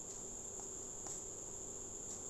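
A steady high-pitched drone runs throughout, with a faint lower hum under it, and a few soft paper ticks as a CD lyric booklet's pages are handled.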